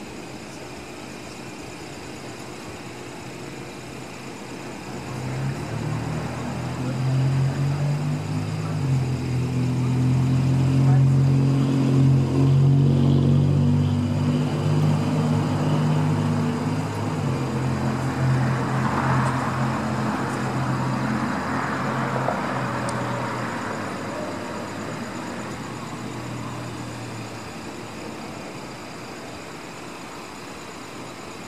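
A motor vehicle's engine runs close by, with a low steady hum that grows louder over several seconds and then slowly fades away.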